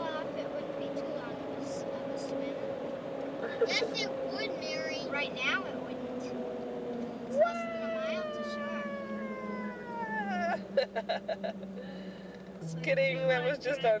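Steady road noise inside a moving car, with a long drawn-out wail about halfway through that falls in pitch over about three seconds, and brief voice sounds around it.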